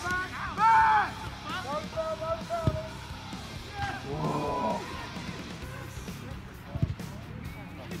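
Distant shouts of footballers calling across an open grass pitch during play, with a couple of sharp thuds of a football being kicked, one about a third of the way in and one near the end.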